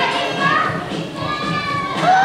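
Children's voices calling out in a large hall: several high-pitched, drawn-out shouts overlapping.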